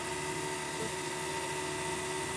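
Steady mechanical hum with a faint high whine. The car's engine is not running.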